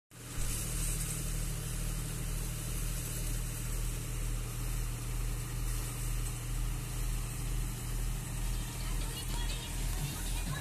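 Vardhaman multicrop thresher and the diesel tractor driving it, running steadily with a deep hum that swells and fades about every three quarters of a second.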